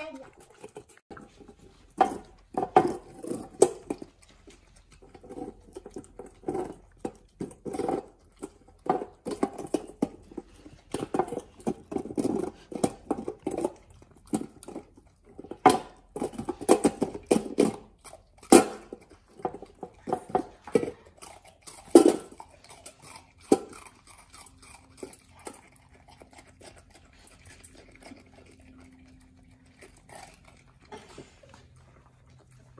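Samoyed puppy chewing and licking a block of ice in a stainless steel dog bowl: irregular crunches and clicks, with the ice knocking against the metal bowl. The chewing thins out to a few scattered clicks near the end.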